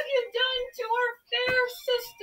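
A high woman's voice singing a run of about five short notes with little pause between them, with no accompaniment heard.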